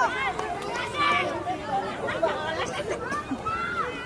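Several voices calling and shouting over one another, many of them high-pitched, with no clear words: players and sideline spectators at a youth football match.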